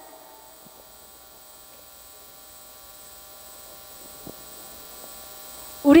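Faint, steady electrical mains hum from the stage sound system, with a single soft click about four seconds in.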